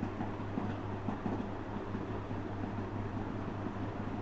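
Steady low electrical hum with even background hiss; no other distinct sound stands out.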